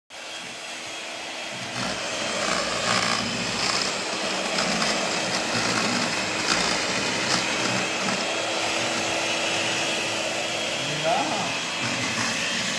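Electric hand mixer running steadily with its beaters churning inside a hollowed-out pumpkin, a motor whir with a steady hum under it.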